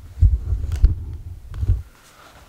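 Handling noise from a camera being picked up and carried: low thumps and rumble against the microphone with a few light clicks. It stops suddenly near the end as the camera is set down.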